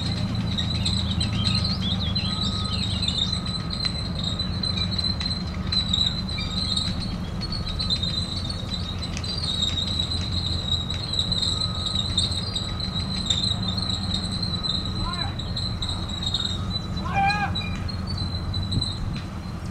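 M4 Sherman tank on the move, its engine a steady low drone under a continuous high squeal and scattered clanks from its steel tracks.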